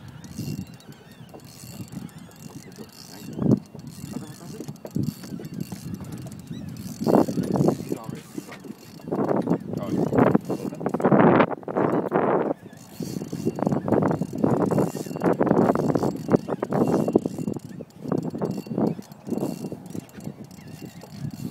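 Fishing reel ratcheting in bursts of rapid clicks while a hooked alligator gar is fought on the line, busier in the second half.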